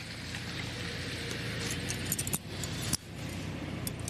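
Metal handcuffs clinking and clicking as they are put on a man's wrists behind his back, with a few sharp clicks in the second half. A steady background noise runs underneath.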